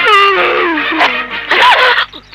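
A man's long, drawn-out moaning cry, falling in pitch, over background music.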